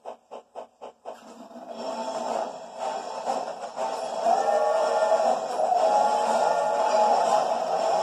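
A steam locomotive chuffing in quick, even beats, about six a second, for the first second, then film music starting up and building louder over it. It is a film soundtrack played through a screen's speaker and recorded off the screen.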